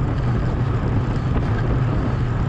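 Steady low rumble of wind buffeting a bicycle-mounted camera's microphone while riding at speed.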